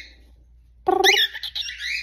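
Cockatiel calling: a loud burst of squawking chatter with quick rising chirps, starting a little under a second in.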